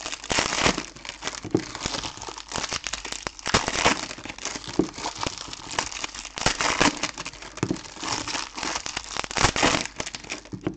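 Foil trading-card pack wrappers crinkling in a dense run of sharp crackles as they are handled and opened by hand.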